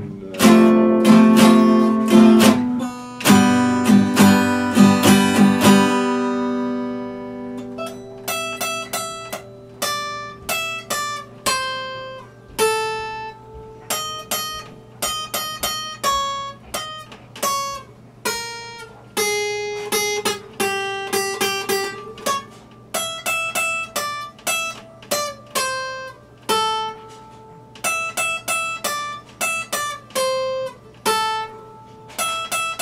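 Epiphone acoustic guitar played solo: loud strummed chords for about the first six seconds, then quieter fingerpicked single notes and small chords, a few a second, with short pauses between phrases.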